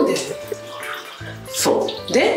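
Water running and splashing from a hand-held shower in a small tiled bathroom, under light background music, with a short voice about one and a half seconds in.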